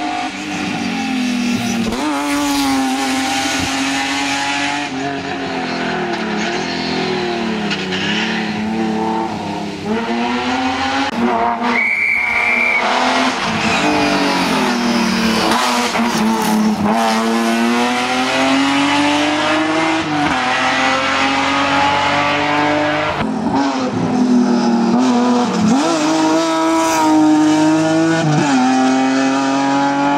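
BMW M3 E36 race car's straight-six engine driven hard, its pitch climbing and dropping again and again through gear changes and lifts for corners. A short, high tyre squeal comes near the middle.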